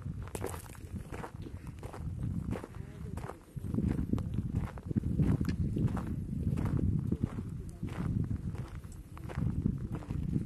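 Footsteps crunching on a gravel mountain track, over an uneven low rumble of wind on the microphone.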